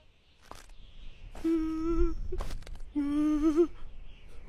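A voice humming two short notes, the second wavering at its end, with a short click between them.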